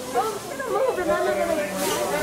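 Indistinct chatter of several people talking over one another, with a short hiss near the end.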